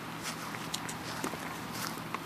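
Footsteps on dry, dead grass: irregular small crunching clicks.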